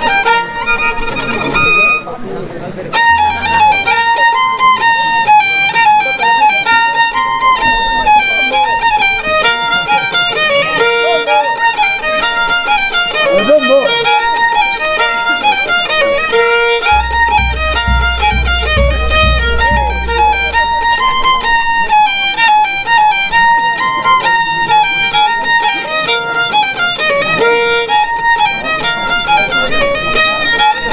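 Violin playing a fast Andean folk tonada, a high melody in quick repeating figures. It starts after a brief break about two to three seconds in.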